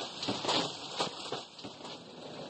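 Heavy hail falling: hailstones pelting the ground in an irregular clatter of many small impacts over a steady hiss.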